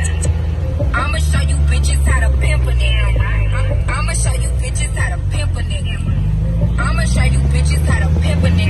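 Car engine running with a heavy low drone heard from inside the cabin, its pitch rising near the end as it picks up speed. Voices and music are heard over it.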